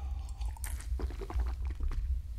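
Sipping from a crystal whisky tumbler: short wet mouth and swallowing clicks, then the glass set down on the table near the end, over a low steady hum.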